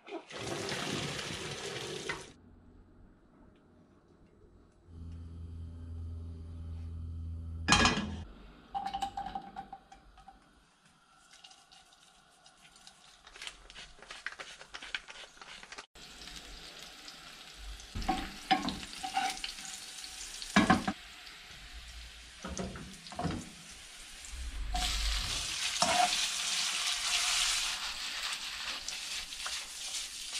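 Pasta water poured from a pot through a colander into a stainless-steel sink for about two seconds. Then sliced garlic frying in olive oil in a pan, with knocks of utensils against it. Near the end the sizzle grows loud as the drained spaghetti goes into the hot oil.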